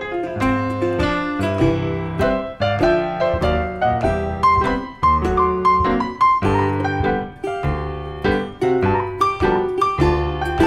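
Instrumental break in a roots-blues song, led by piano playing a busy run of notes.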